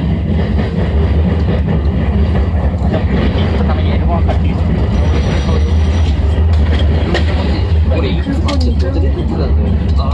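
Steady, loud running rumble of an SAT721-series electric multiple unit travelling along the line, heard from inside its front car.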